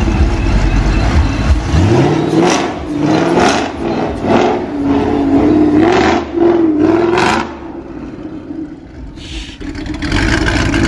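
Supercharged V8 of a Shelby 1000 Mustang idling with a low rumble, then revved hard about eight times in quick succession. It drops back to a quieter idle near the end, with one more short blip.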